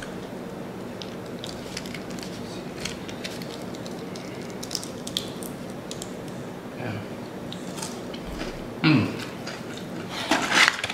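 A person chewing a crispy breaded fried chicken wing, with small scattered clicks and crackles over a steady low hum. There is a short louder sound near the end.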